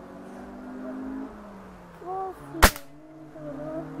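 A single shot from a Hatsan 125 Sniper Vortex break-barrel gas-piston air rifle: one sharp crack about two-thirds of the way in.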